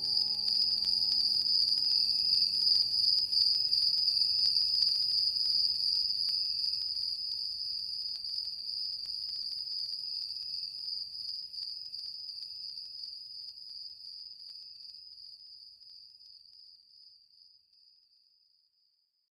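A high, steady trill with a fast shimmer, fading out slowly and almost gone by the end. The last notes of the music die away just after it begins.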